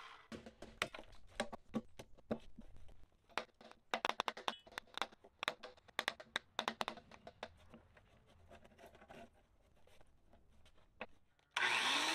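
Irregular sharp taps and knocks of a chisel breaking out and paring the waste between circular-saw kerfs to clean up a wide groove in a timber beam. Near the end a Milwaukee circular saw starts up.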